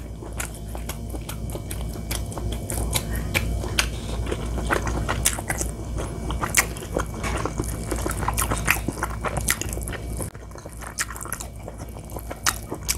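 Close-up chewing of a mouthful of conch rice, full of wet mouth clicks and smacks, while a wooden spoon stirs and scrapes rice in a ceramic bowl.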